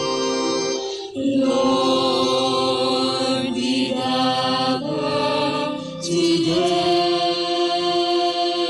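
Slow church hymn: long held sung notes over organ chords. The chord changes about a second in, again near five seconds and about six seconds in.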